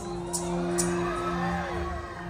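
A stage band's soft sustained chord through the PA, a few steady held notes, with faint shouts and whoops from a large crowd.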